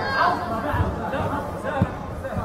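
Spectators' chatter: several voices talking at once in the background, with no one voice standing out.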